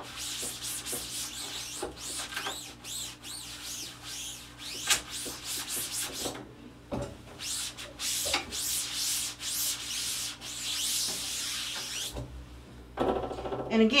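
Cloth rag rubbing back and forth over a silkscreen's mesh and frame in repeated strokes, wiping the washed-out screen clean. The strokes stop about twelve seconds in.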